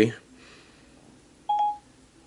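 iPhone Siri beep: one short electronic tone about one and a half seconds in, as Siri stops listening and begins processing the spoken request.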